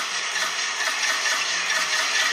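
Steady crowd noise in a basketball arena during live play, an even wash of sound with no single cheer or whistle standing out.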